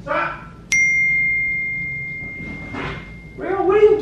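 A single bright bell-like ding about a second in, one clear tone with overtones ringing out and fading over about two and a half seconds. Brief bits of a woman's voice come before and after it.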